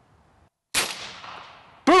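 Umarex Gauntlet .30-calibre PCP air rifle firing a single shot: a sudden sharp report about three-quarters of a second in that fades away over about a second.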